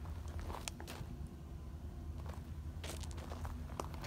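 Footsteps on concrete, a few light scuffs and clicks, over a steady low hum.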